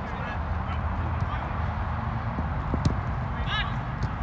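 Open-air ambience of a floodlit soccer pitch: steady background noise with a few short, distant honk-like calls, the clearest about three and a half seconds in, and a single sharp knock just before it.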